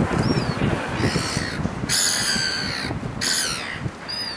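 Gulls calling: a call about a second in, the longest and loudest about two seconds in, and a shorter one just after three seconds.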